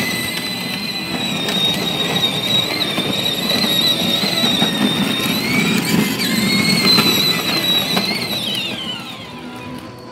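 Pilsan electric ride-on toy jeep driving on concrete. Its gear motor gives a high, steady whine that wavers a little, then slides down in pitch and fades near the end. Under the whine is the rumble of hard plastic wheels.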